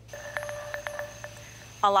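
Faint steady tones at a few fixed pitches, with several light clicks scattered through them, until a woman's voice begins near the end.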